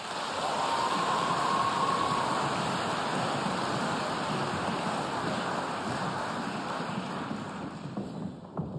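Audience applause, dense and steady, easing slightly toward the end.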